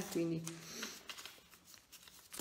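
A woman's voice trailing off in a drawn-out, held 'eh', then a short pause with faint rustling and a few light clicks in a small room.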